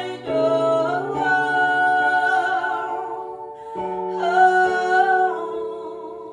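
Women singing a slow worship song together over held chords on an electronic keyboard, the chord changing twice.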